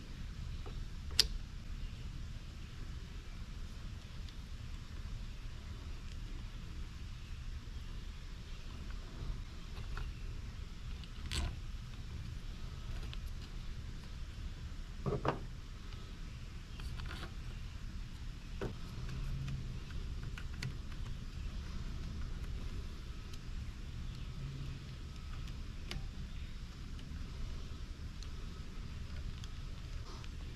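Scattered sharp clicks and taps of plastic and small metal parts as a new air-cleaner bracket is fitted by hand onto a Ryobi string trimmer's carburettor, over a steady low rumble. The sharpest click comes about a second in, and a few more are spread through the rest.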